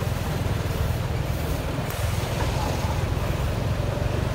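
Motorcycle taxi engine running with a steady low rumble as it rides through dense city traffic beside buses and taxis, with road and traffic noise all round.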